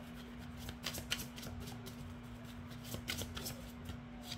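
Tarot cards being shuffled by hand: irregular soft card flicks and riffles, in two quicker runs about a second in and about three seconds in, over a faint steady hum.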